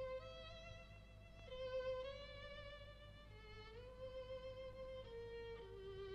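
A lone violin playing a slow melody of long held notes with vibrato, gliding up between two notes a little past the middle.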